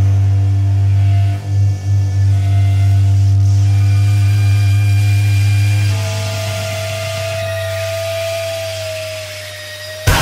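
A loud, steady low electrical hum drone with several faint held tones over it, cutting out briefly twice near the start. About six seconds in, a single higher sustained tone like amp feedback takes over and sags slightly in pitch as the whole drone fades.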